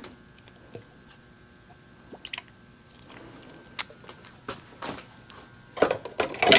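Faint water from a watering can trickling onto seedlings in potting soil in a plastic cell tray, with small scattered clicks and taps from the can and tray.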